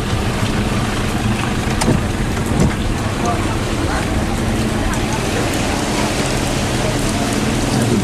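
Rain falling on a car's roof and windshield, heard from inside the cabin over the steady low hum of the idling or slow-moving car.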